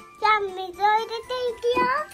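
A child's high voice singing a short phrase of several notes, rising at the end.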